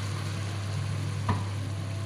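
Fish in chili sambal simmering and sizzling in a granite-coated pan: a steady sizzle over a low, even hum, with one sharp click a little over a second in.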